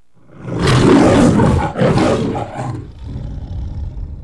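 The MGM logo's lion roar: a recorded lion roaring loudly, a second roar just before two seconds in, then a quieter growling tail that fades out.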